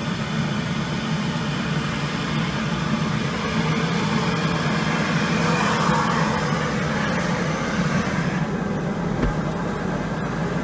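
Helicopter engine and main rotor running steadily on the ground, heard from inside the cabin, with a loud, even drone.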